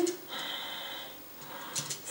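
A person's long, hissing breath lasting about a second and fading out, then a short, sharp breath near the end, taken as part of a vocal breathing exercise.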